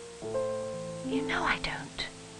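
Soft film-score piano music, new notes coming in a moment in, with a brief breathy whisper over it around the middle.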